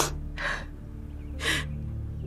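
A woman crying: short, sharp sobbing breaths, three of them in two seconds.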